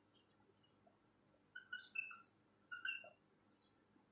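Near silence: room tone, broken by two short groups of faint high chirps, about one and a half and three seconds in.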